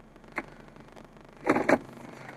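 Automatic gear selector lever of a 2005 Mercedes-Benz SLK 350 being tapped sideways in its gate: one sharp click about half a second in, then a louder pair of knocks near the end.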